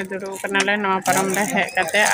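Only speech: a woman talking to the camera, over a steady low hum.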